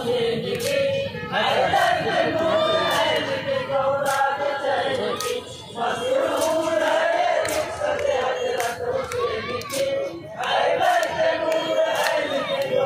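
A group of men chanting a jharni marsiya, a lament for Hazrat Husain, together in loud unison phrases, with short breaks about a second and a half in, near the middle and near the end. Occasional sharp clicks sound over the chanting.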